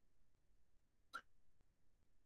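Near silence: room tone, with one brief, faint sound about a second in.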